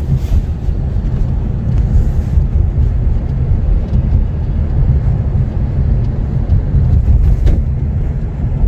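Steady low rumble of a car being driven, heard from inside the cabin: road and tyre noise with the engine underneath.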